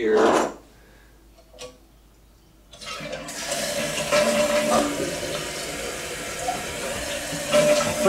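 Toilet being flushed: a click of the tank handle about three seconds in, then water rushing steadily from the tank into the bowl. The owner finds this toilet's flapper drops back down too soon after the flush and needs adjusting.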